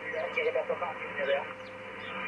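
Faint, broken voice of a distant mobile station coming in over the Icom IC-7610 transceiver, thin and narrow-sounding under a steady hiss of band noise. The signal fades up and down and is hard to make out.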